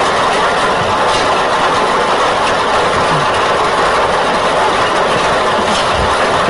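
Lottery ball draw machine running: numbered balls clattering and tumbling in the mixing chamber, a steady dense rattle and rush.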